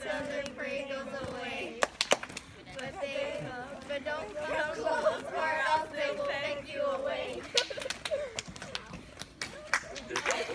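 A group of girls' voices reading or chanting aloud together, too blended to make out words, broken by a few sharp taps about two seconds in and several more near the end.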